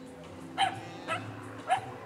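A dog barking three times, short barks about half a second apart.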